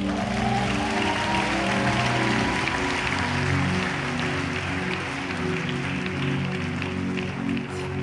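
A congregation applauding and cheering over soft, sustained keyboard chords.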